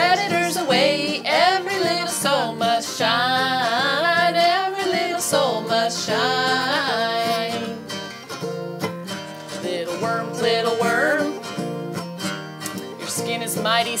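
A woman singing a children's song to a strummed acoustic guitar. The singing stops for a couple of seconds about halfway through while the guitar keeps playing, then comes back.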